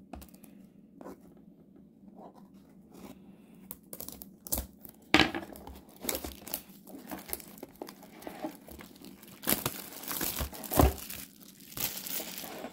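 Clear plastic shrink-wrap being torn and crinkled off a cardboard trading-card blaster box. It is quiet at first, then comes in crackling tears from about four seconds in, thickest near the end.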